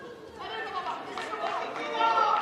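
Indistinct talk and chatter echoing in a large indoor hall, with voices starting about half a second in.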